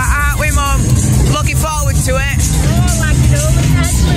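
Loud fairground music playing over the rides' sound systems: a heavy, steady bass line with vocals over it.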